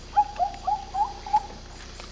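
Five quick hooting calls in a row over about a second, each a short pitched note that dips and comes back up.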